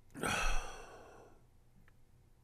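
A man's heavy sigh, one long breath out close to the microphone, loudest about half a second in and trailing off over the next second.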